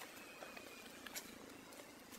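Faint outdoor background with a thin, steady high tone in the first half and a few soft clicks, the clearest about a second in.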